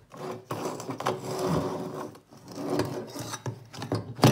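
Pressed-steel Tonka toy truck body pieces scraping and knocking against each other as they are worked apart by hand: a few rough metal-on-metal scrapes.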